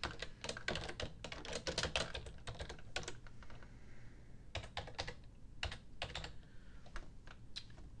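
Typing on a computer keyboard: a quick run of keystrokes for about three seconds, a short pause, then a slower run of separate keystrokes.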